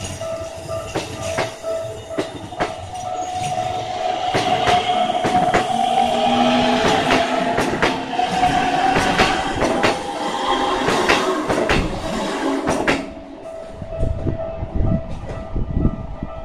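Keikyu 800 series electric train passing close by at a level crossing: wheels clacking over the rail joints, with a wavering motor tone. The train clears about 13 s in, and the level-crossing warning bell keeps ringing.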